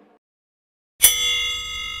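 A single bell-like metallic strike about a second in, after near silence, ringing on with several clear tones that slowly fade.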